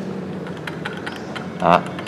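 A few faint, light clicks as a hand works the left brake lever and its parking-brake lock tab on a Honda Air Blade scooter, over a steady low hum. A short vocal sound comes near the end.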